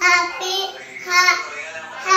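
A small child's high-pitched voice in drawn-out, sing-song calls: one at the start and another about a second in.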